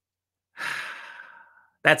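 A man's sigh: one breathy exhale lasting about a second that fades out, followed near the end by the start of his speech.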